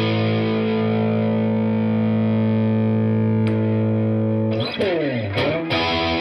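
Epiphone Les Paul Standard 50s electric guitar played through a Boss Katana amp: a chord is struck and left to ring for about four and a half seconds, then slides down in pitch. New picked notes start near the end.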